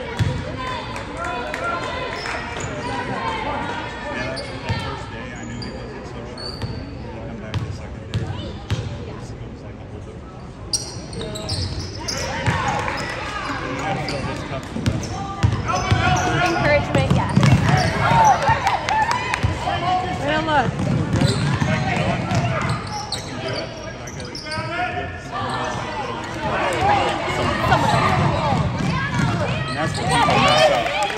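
A basketball bouncing on a hardwood gym floor during play, over spectators talking and shouting in a large hall. The voices grow louder about twelve seconds in.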